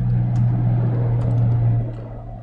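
A loud steady low hum that swells and fades near the end, with a few faint clicks of typing on a computer keyboard.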